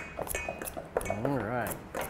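Metal utensils scraping and clinking in stainless steel mixing bowls as margarine is cut into flour for pie crust, with a run of short clicks throughout. A brief hummed voice sound comes about a second in.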